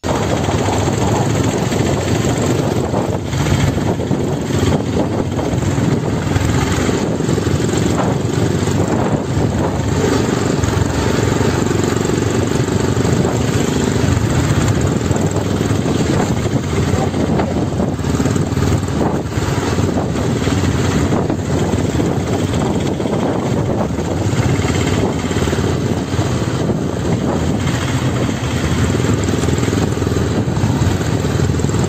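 Royal Enfield Classic 350's single-cylinder engine running as the motorcycle is ridden along a road: a steady, dense rumble with no breaks.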